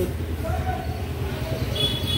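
Gas stove burner on high flame under a tava, giving a steady low roar, with a faint thin high whistle coming in near the end.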